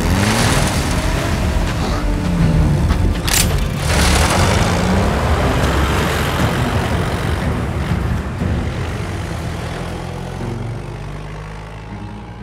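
Motor vehicle engines revving and pulling away, with pitch rising and falling in the first few seconds and a sharp bang about three seconds in; the engine noise fades away steadily over the second half.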